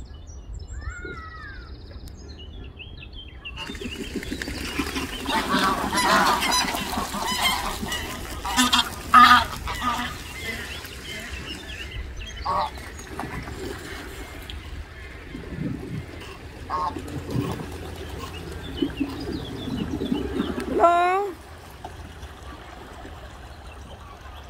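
A flock of greylag geese honking, busiest between about four and ten seconds in, with one loud honk rising in pitch near the end.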